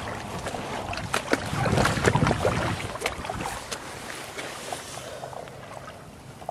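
Small waves lapping and splashing at the water's edge, against an eroding shoreline strewn with uprooted roots, with wind rumbling on the microphone. The splashing is busiest about one to two seconds in, then eases off.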